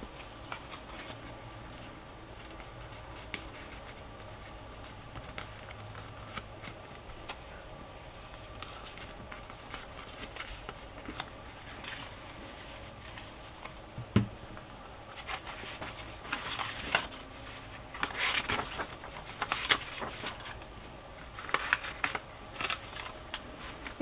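Paper being handled: light rustles and taps of paper tags and journal pages, one sharp knock about halfway through, then louder rustling as the pages are flipped near the end.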